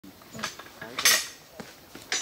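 Metal-on-metal clanks from track work: steel hand tools and fittings striking the rail and fastenings, each hit ringing briefly. A light clink comes about half a second in, a loud ringing clank at about one second, and a fainter knock near the end.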